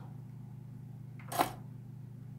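A single short click a little past halfway, over a steady low hum.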